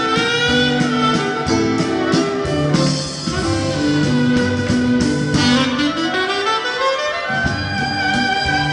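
Live dance band playing a waltz, a saxophone carrying the melody over bass and chord accompaniment; a little past the middle the lead line climbs in a rising run.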